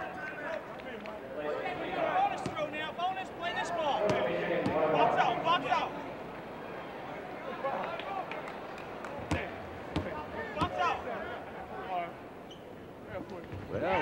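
Indistinct voices from the arena crowd, then a basketball bounced a few times on a hardwood court in the latter half: a player dribbling before a free throw.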